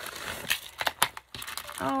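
Plastic packaging crinkling in a few short, sharp rustles as a poly mailer and its cellophane-wrapped contents are handled and unpacked.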